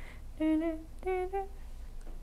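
A person humming two short two-note figures, each stepping up a half step, the second pair higher than the first: sounding the half steps of the B double harmonic major scale, D# to E and then F# to G.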